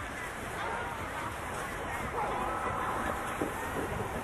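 Distant children's voices calling and shouting across a sledding hill, with one long drawn-out call a little past the middle.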